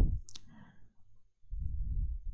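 A single short, sharp click as handwriting is entered on a computer whiteboard. It is followed by quiet, then a low, muffled rubbing from about a second and a half in.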